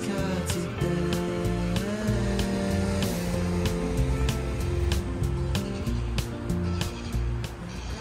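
Background music with a steady percussive beat over sustained chords.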